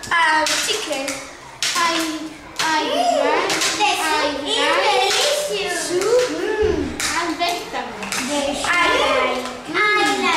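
Children's voices talking and calling out over one another, the pitch rising and falling, with sharp claps and clicks mixed in.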